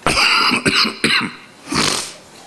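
A man coughing close to a microphone: three coughs in about a second, then a breathy catch of breath near the end.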